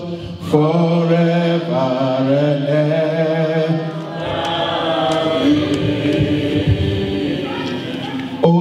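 Slow worship singing over the hall's PA, with long, drawn-out held notes led by a man on a microphone.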